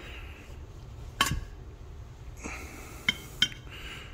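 Light metal clicks and clinks as a flat stainless steel bar and a stainless muffler shell are handled against each other: one sharp click about a second in, then two smaller ones near the end, with a soft breath-like hiss between them.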